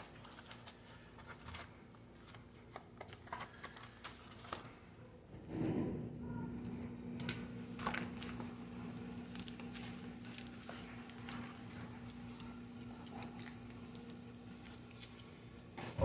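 Faint crinkling, rustling and small clicks of packaging being handled as diecast cars are taken out of a box. About five and a half seconds in, a steady low hum starts and runs on.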